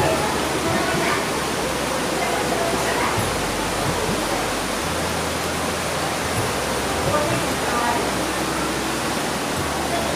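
Steady rushing of flowing water, an even unbroken hiss, with faint voices behind it.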